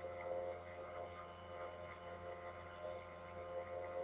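Faint, steady background music: soft held tones over a low hum.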